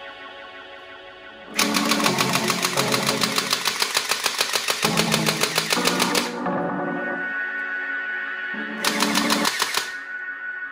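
Toy M416 rifle firing full-auto: a rapid, loud clatter of shots lasting about four and a half seconds, then a shorter burst near the end, over steady background music.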